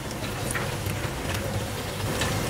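Urad dal vadas deep-frying in hot oil: a steady sizzle with scattered small crackles.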